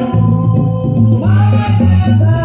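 Live gospel worship music from a small band: electric bass holding low notes under congas, with a singer's voice rising in about a second in.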